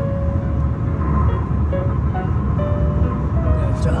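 Steady road and tyre rumble inside a car cabin at highway speed, with soft background music of long held notes over it.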